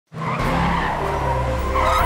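Cartoon sound effect of a car engine with skidding tyres as an animated vehicle arrives, swelling slightly near the end.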